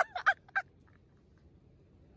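Laughter in quick rhythmic bursts that trails off about half a second in, then quiet.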